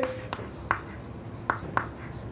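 Chalk writing on a chalkboard: a few short taps and strokes of the chalk, four in about two seconds.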